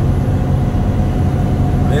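Steady low drone of a loaded semi-truck's engine and road noise, heard inside the cab as the truck climbs a mountain grade.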